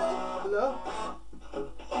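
Guitar being played, with a short bit of voice near the start; the playing thins out about a second in and comes back fuller at the end.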